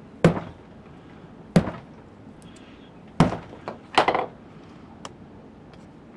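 A fist wearing a 3D-printed ABS knuckle duster punching a pine 2x4 four times, sharp hard impacts about a second and a half apart. The last punch is followed by a brief clatter of smaller knocks.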